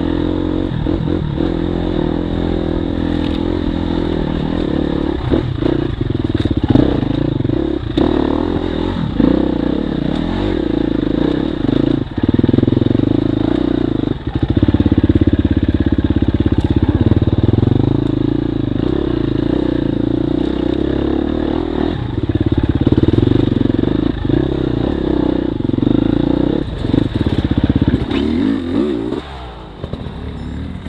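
KTM off-road motorcycle engine running under constantly changing throttle while riding a rough trail, with scattered knocks and clatter. Near the end the engine note drops away as the throttle is rolled off.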